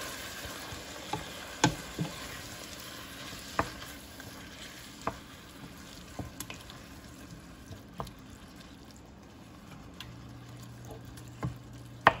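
Bacon, sausage, vegetables and tomatoes sizzling in a stainless steel pot while a wooden spoon stirs them, knocking against the pot every second or two. The sizzle dies down a little over the stretch.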